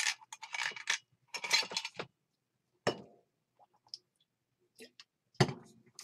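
A person drinking from a water bottle, with gulps over the first two seconds, followed by a few knocks and clinks as the bottle is handled and set down. The sharpest knock comes about five and a half seconds in.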